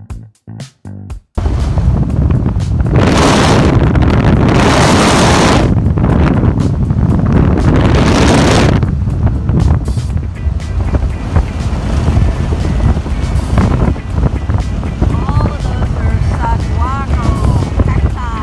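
Wind buffeting the microphone over a steady low rumble, as when filming from a moving vehicle, with heavy gusts about three and eight seconds in. It starts sharply about a second in, where music cuts off.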